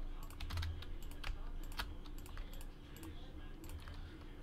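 Typing on a computer keyboard: a run of light, irregular keystrokes.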